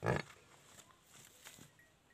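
A water buffalo gives one short, loud grunt right at the start, lasting about a quarter of a second.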